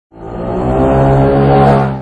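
A motor vehicle's engine running at a steady pitch, fading in and then fading out.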